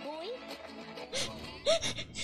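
Film soundtrack playing at low level: a character's voice speaking over quiet background music.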